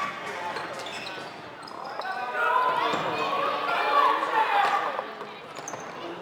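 Floorball game sounds in an echoing sports hall: players' voices calling out, loudest in the middle few seconds, over scattered clacks of sticks and the plastic ball and footfalls on the court floor.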